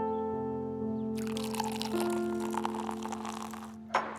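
Soft background music of held piano-like chords. Over it, from just over a second in, a drink is poured for about two and a half seconds, and a single sharp knock comes near the end.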